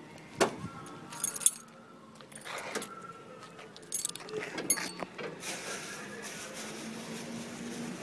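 Rummaging through a bag of odds and ends: scattered clicks, knocks and clinks of objects being handled, then a steady soft rustle over a faint low hum.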